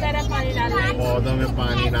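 Voices talking inside a moving car, over the steady low hum of the car's engine and road noise.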